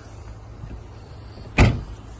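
SEAT Arona tailgate being shut: one loud thud about one and a half seconds in, over a low steady background.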